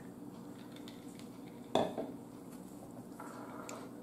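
One sharp clink of tableware against the table a little under two seconds in, followed by a few faint taps and handling sounds over low room noise.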